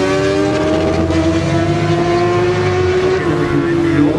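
Engine running at drag racing: one steady engine note slowly rising in pitch, easing slightly near the end, over a low rumble.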